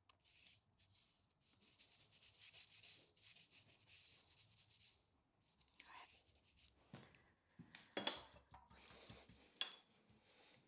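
Faint, repeated scrubbing strokes of a paintbrush laying thin, turpentine-thinned oil paint onto a panel. These give way in the second half to a few soft knocks and a short click.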